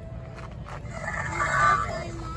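A shrill, bird-like dinosaur call from the exhibit's sound effects, starting a little past the middle and lasting well under a second.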